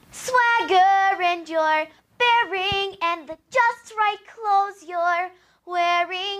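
A young girl singing solo and unaccompanied, holding clear sustained notes in short phrases with brief breaths between them.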